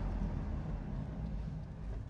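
Ringbrothers' restomodded 1948 Cadillac coupe driving along at an even speed: a steady low engine and road rumble.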